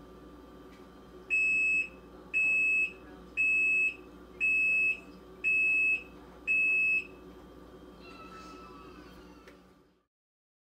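Panda PAN56MGW2 portable washing machine sounding six identical high electronic beeps, about one a second, as its display counts down to zero: the signal that the wash cycle has finished. A faint steady hum runs underneath.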